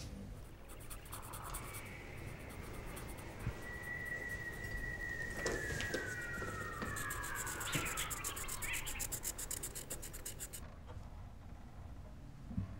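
A high whistling tone holds steady, then slides down in pitch over about four seconds, over a fast, even, high-pitched ticking that cuts off suddenly near the end.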